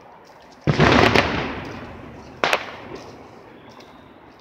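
Fireworks going off: a loud bang about a second in that dies away over a second or so, then a second, sharper bang about a second and a half later.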